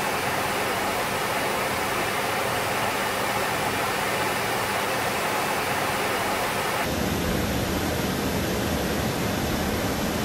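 Steady rushing air and engine noise inside a Su-30 fighter's cockpit in flight, with a faint low hum under it. About seven seconds in, it changes abruptly to a deeper, duller noise.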